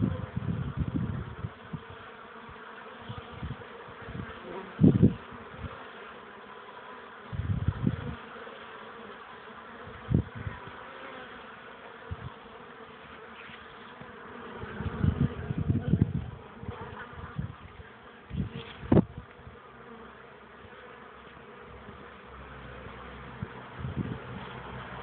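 Many honeybees buzzing at a top-bar hive, a steady hum of wings with short louder swells every few seconds.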